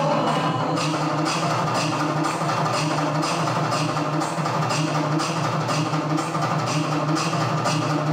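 Instrumental passage of Tamil folk dance music for a kummi stick dance: a steady drum beat with sharp, wood-block-like clicks keeping time, and no singing.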